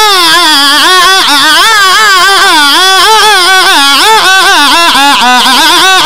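A young man's high voice singing a qasida into a microphone, one long unbroken melodic line whose pitch wavers up and down constantly. It is loud.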